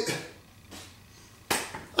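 A single sharp hand clap about one and a half seconds in, after the tail of a spoken word.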